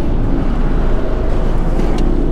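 A car engine running steadily, an even low noise with no sudden events.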